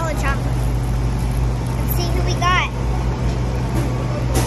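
Steady low rumble of city street traffic, with a child's voice breaking in briefly about two seconds in.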